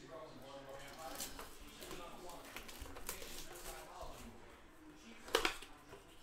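Indistinct talking with cardboard handling noises from a trading-card blaster box, then a single sharp snap about five and a half seconds in as the box's cardboard flap is pulled open.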